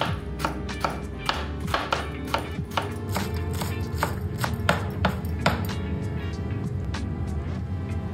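Chef's knife chopping tomatoes and spring onions on a wooden cutting board: a quick run of sharp chops, about three a second, that thins out near the end. Background music plays throughout.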